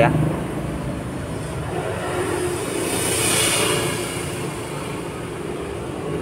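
Steady background road-traffic noise, with a vehicle passing that swells and fades about three seconds in.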